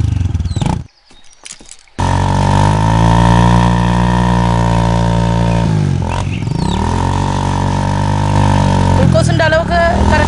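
Motorcycle engine running at high, steady revs. It cuts in abruptly about two seconds in, after a brief hush, and about six seconds in the revs dip and climb back up. Voices come in near the end.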